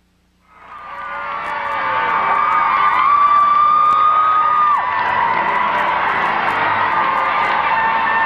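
A large crowd of teenagers cheering, whooping and screaming, fading in after about half a second of near silence, with one long high scream held through the middle.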